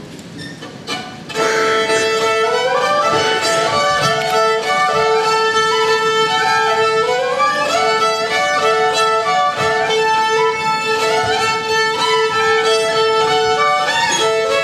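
Solo fiddle playing a tune that comes in loudly about a second in, with a steady held drone note sounding under the moving melody.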